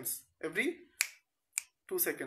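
Two finger snaps, sharp single clicks about half a second apart, between a few spoken words.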